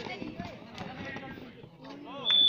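Faint voices of kabaddi players and onlookers during a raid and tackle on the mat, with a few soft thuds.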